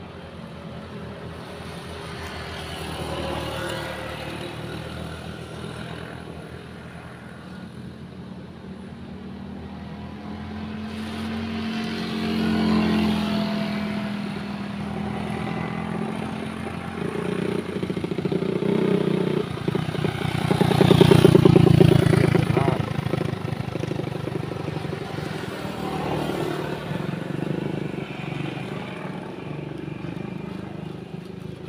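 Motor vehicle engines running off-screen, swelling to their loudest about two-thirds of the way through and then fading, like vehicles passing by.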